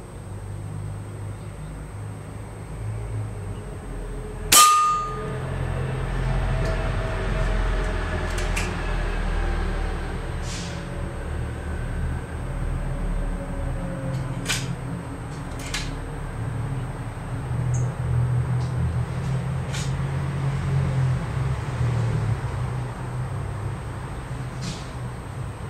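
A lead-free air-gun pellet hits an upturned stainless steel bowl and punches through it about four and a half seconds in: one sharp crack, then the bowl rings with several tones that fade away over the next several seconds.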